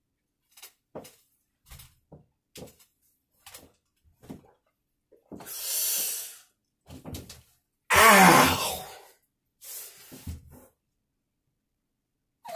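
A man's loud pained cry, wavering in pitch, about eight seconds in, from the sting of hydrogen peroxide in open cuts. It follows a hiss about six seconds in and a scatter of small knocks and clicks in the first few seconds.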